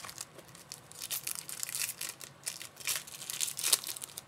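Shiny wrapper of a baseball card pack being torn open and crinkled by hand: a dense run of sharp crackles starting about a second in, loudest near the end.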